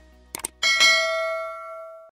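A couple of quick mouse-style clicks, then a bright bell ding that rings out and fades over about a second and a half: a subscribe-button notification sound effect.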